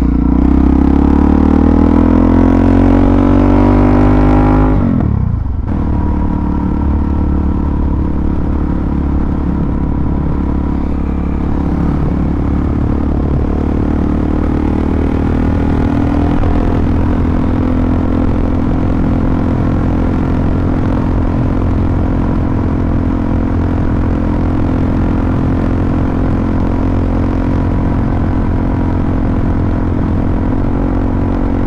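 Suzuki DR-Z400SM's single-cylinder four-stroke engine accelerating hard, its pitch rising for about four seconds before falling off abruptly about five seconds in. It then runs at a steady cruising speed.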